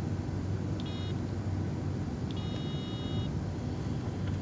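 Simon game tones from the small on-board speaker of an Adafruit Circuit Playground board: a short electronic beep about a second in, then a longer beep lasting about a second, each sounding as one of the game's LEDs lights up.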